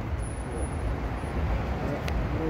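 City street traffic noise: a steady rumble of passing and idling cars.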